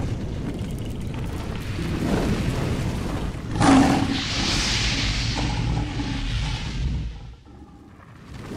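Cinematic logo-intro sound effects: a low rumble builds, a sudden boom hits a little before halfway, then a hissing rush like flames flaring up fades away near the end.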